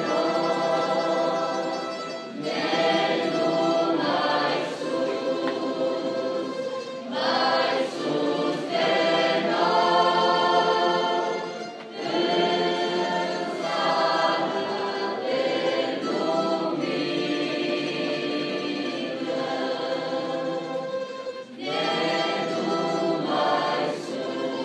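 Choir singing a hymn with orchestral accompaniment, in long phrases with brief breaks about two seconds in, halfway through and near the end.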